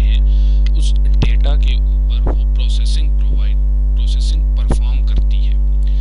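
Loud, steady electrical mains hum at about 50 Hz with a ladder of overtones above it, carried on the recording's audio.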